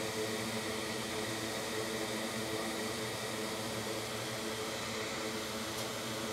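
Steady mechanical hum with a light hiss and no distinct events: the room tone of running equipment.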